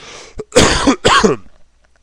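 A man smoking a cigarette coughs twice in quick succession, after a short breath in.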